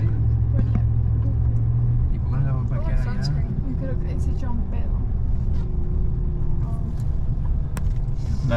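Car engine and road rumble heard from inside the cabin as the car drives slowly, with a steady low hum over the first two seconds. Quieter voices talk in the car at times.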